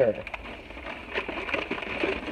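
Plastic wrapping crinkling and rustling with many small crackles as it is pulled off a wrapped object.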